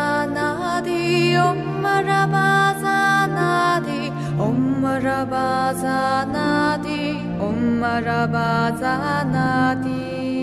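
Devotional intro music with a chanted mantra: a voice holding long notes that glide from one pitch to the next over a steady low drone.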